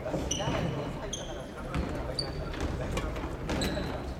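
Court shoes squeaking on a wooden gym floor, several short high squeaks, mixed with sharp hits of rackets on shuttlecocks, over a murmur of voices.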